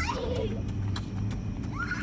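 A child squealing with excitement right at the start and again near the end, over a steady low rumble and faint ticks.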